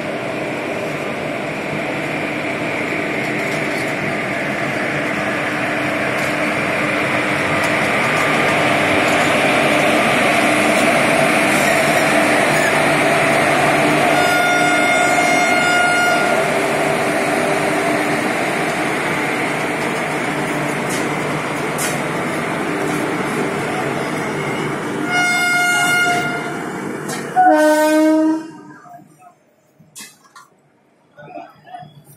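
Electric locomotive hauling a passenger express past at low speed as it pulls out of a station, a steady rumble and clatter of wheels on rail that grows louder as the locomotive goes by. Its air horn sounds about halfway through, then twice more in quick succession near the end, before the sound cuts off suddenly.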